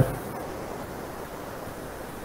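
Steady, even hiss-like noise, in the manner of wind or a rushing background, with no distinct events.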